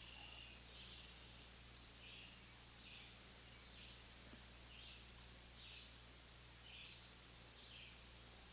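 Faint bird chirping: short high calls repeated about once a second, over a steady background hiss and low hum.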